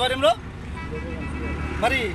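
Low rumble of road traffic, swelling in the pause between a man's spoken phrases, as a vehicle passes.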